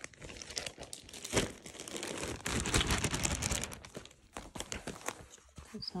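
Plastic zip-top bag crinkling as it is opened and handled, a dense crackle heaviest in the middle, with one sharp crack about a second and a half in.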